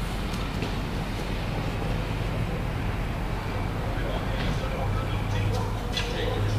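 Steady low hum with even room noise and a few faint ticks.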